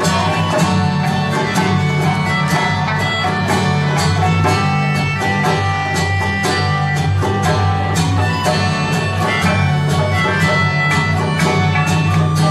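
Live instrumental passage from a small folk band: strummed acoustic guitar and a plucked sanshin with a melodica playing the held melody line, without singing.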